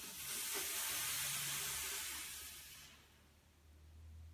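A long, forceful breath out through the mouth, a steady hiss lasting about three seconds and fading away, exhaled during the leg circle of a Pilates corkscrew.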